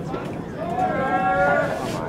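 A person's voice shouting one long drawn-out call, starting about half a second in and held at a steady pitch, with a short sharp noise at its end.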